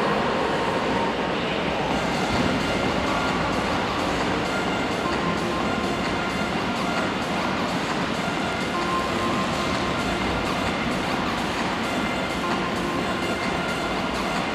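Steady, echoing rumble inside a velodrome hall as a track bike with a rear disc wheel rolls fast on the wooden boards during a 1 km time trial.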